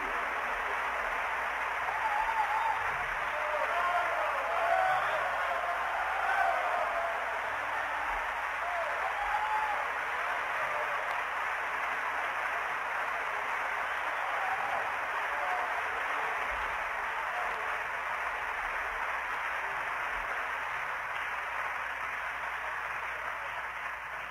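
Large concert-hall audience applauding steadily, with voices shouting out over the clapping for the first several seconds; the applause eases off slightly near the end.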